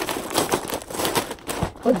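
Plastic packaging crinkling and rustling as a grey poly mailer bag is pulled open by hand and a dress in a clear plastic bag is drawn out of it.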